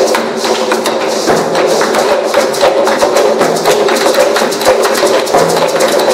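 Percussion ensemble playing a fast, dense rhythm: a large double-headed wooden bass drum struck with sticks, together with congas played by hand.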